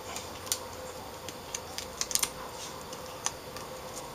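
A few light clicks and ticks of hands pressing aluminum foil tape down onto the LCD panel's metal frame: one about half a second in, a small cluster around two seconds, and one more past three seconds, over a faint steady room hum.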